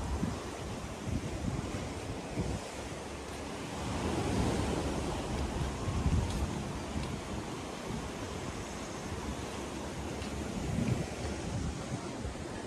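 Wind buffeting the microphone outdoors, an uneven rumbling noise that swells about four seconds in.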